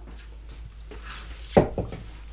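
Handling noise: a brief rustle, then two sharp knocks about a second and a half in as a small handheld tool is set down on the hard worktable.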